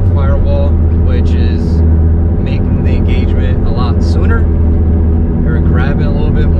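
Steady low drone of the Acura TSX's 2.4-litre K24 four-cylinder engine and road noise, heard from inside the cabin while driving.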